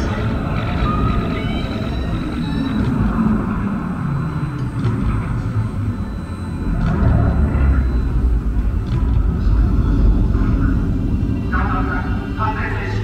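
A deep rumble of the kind played as sound effects over loudspeakers during the life-size moving Gundam's demonstration, as the robot moves. Voices are heard briefly at the start and again near the end.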